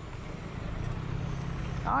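A van's engine running low and steady as it drives slowly past, growing slightly louder. A man says "ja" right at the end.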